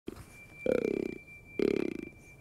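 Fallow buck grunt call, a hand-held tube grunter, blown twice in short rough grunts about a second apart, imitating a rutting fallow buck's groan to draw bucks in.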